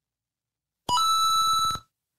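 Livestream donation alert sound: a short ringing electronic tone that starts about a second in, steps up in pitch almost at once and holds for under a second with a fast flutter, then stops.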